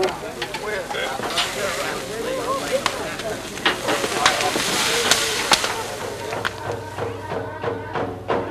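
Meat sizzling on a large outdoor grill amid crowd chatter, with scattered sharp clicks. About six and a half seconds in, drumming starts, a steady beat of about three strokes a second.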